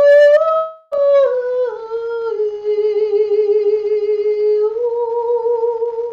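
A woman's solo voice singing a Tao Song as a chanted blessing, without words: long held notes with a slight waver, a short breath about a second in, then a lower note held for a few seconds before stepping back up near the end.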